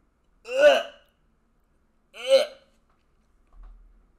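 A man grunting "ugh" in disgust twice, two short sounds falling in pitch about a second and a half apart.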